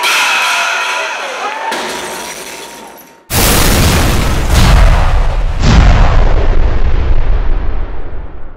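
A man's voice over live crowd noise fades out, then about three seconds in a loud boom sound effect hits with a deep rumble. The boom dies away slowly toward the end.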